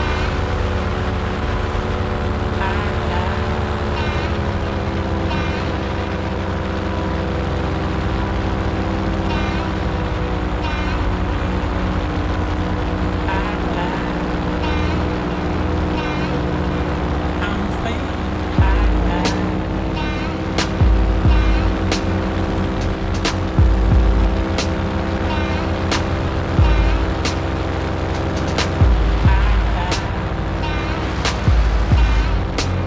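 Paramotor engine and propeller droning steadily in flight, its pitch shifting slightly a few times. From about two-thirds of the way in, wind buffets the microphone in repeated low gusts.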